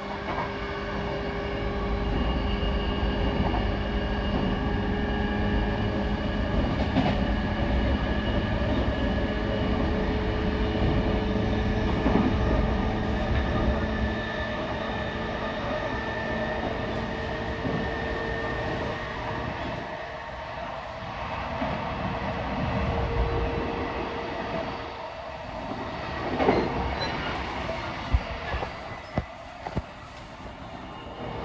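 Interior running sound of a JR East E233-5000 series electric train at speed: the rumble of wheels on rail with steady tones from the train's drive. The low rumble eases off about halfway through, and a few sharp clicks come near the end.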